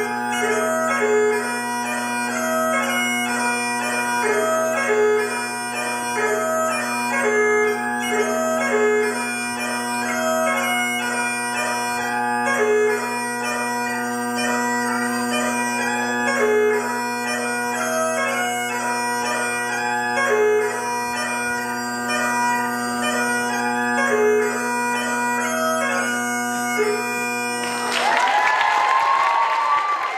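Highland bagpipe tune played over steady drones, cutting off about two seconds before the end. Audience applause and cheering follow.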